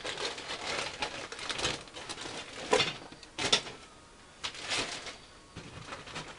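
Plastic bags of model-kit parts crinkling and rustling as they are handled, in several separate handfuls with short pauses between them.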